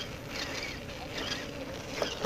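Electric motor and gearbox of a Tamiya CR-01 RC rock crawler running with a faint steady whine as the truck drives over grass, under low wind rumble on the microphone.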